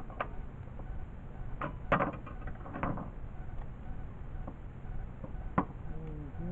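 A few separate wooden knocks and clatters as cut pieces of board and hand tools are handled and set down on a wooden workbench. The loudest comes about two seconds in and a sharp single one near the end.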